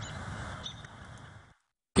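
Outdoor ambience on a golf course: a steady hiss with a few faint, high chirps, cutting off to dead silence about a second and a half in.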